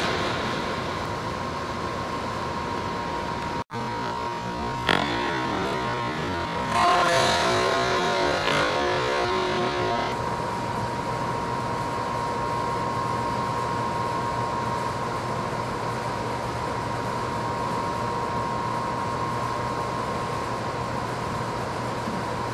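Steady mechanical droning with a thin constant whine, like a large hall's ventilation. There is a single knock about five seconds in, and louder, busier noise from about seven to ten seconds.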